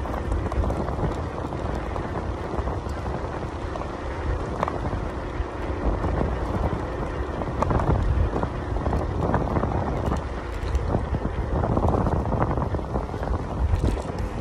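Wind buffeting the microphone of a moving Zero 10 electric scooter, over the rumble of its tyres rolling on a sand-strewn concrete path, rising and falling in gusts.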